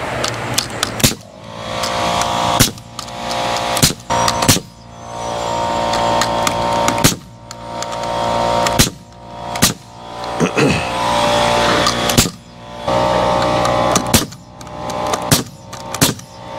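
Pneumatic framing nailer firing about a dozen sharp shots at irregular intervals, driving nails through a wooden purlin into the rafters. A steady machine hum runs underneath.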